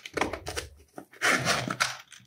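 Zipper of a zip-around hard sunglasses case being pulled open in two scratchy runs, with a little handling of the case.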